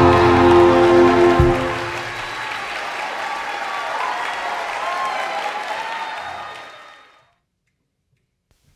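Jazz big band holding a final chord that cuts off with a hit about a second and a half in, followed by audience applause that fades out near the end.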